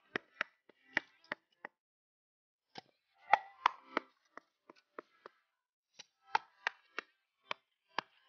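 Small hammer tapping broken tile pieces down into wet mortar: a string of sharp, uneven taps.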